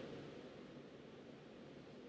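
Near silence: room tone with a faint, steady hiss.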